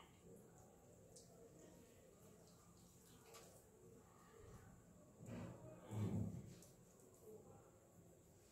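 Near silence with faint rubbing and crackling from fingertips scrubbing a sugar facial scrub over the skin. A brief low sound rises and falls about five to six seconds in.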